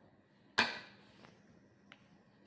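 A single sharp knock of a wooden spatula against kitchenware, ringing out briefly, about half a second in, then a faint click near the end.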